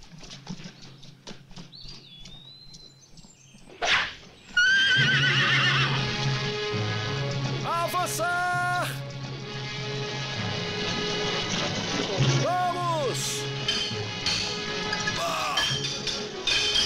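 Horses whinnying during a cavalry charge. A loud orchestral film score comes in about four and a half seconds in and carries on under the neighs.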